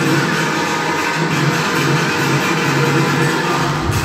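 Loud dance music playing for a dance routine; a deep bass comes in just before the end.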